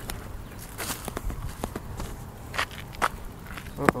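Footsteps while walking, heard as a few irregular taps and scuffs close to a hand-held phone's microphone.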